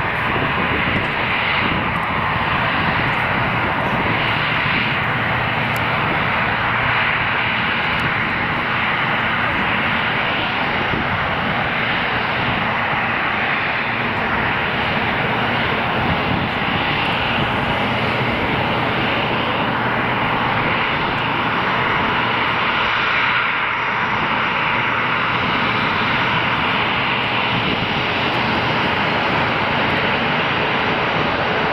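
Boeing 737-300's two CFM56-3 turbofan engines running at taxi power: a steady, even engine rush that holds at the same level throughout.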